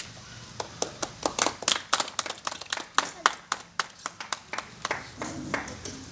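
A small group of people clapping: scattered, irregular hand claps that start about half a second in, come thick and fast for a few seconds, then thin out near the end.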